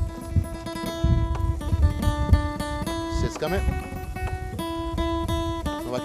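Acoustic guitar playing slow chords, each held and ringing. A few dull knocks from a knife cutting cheese on a wooden board sit under it in the first half.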